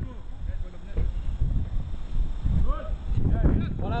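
Wind buffeting the camera microphone as a low rumble, with distant shouting voices near the end.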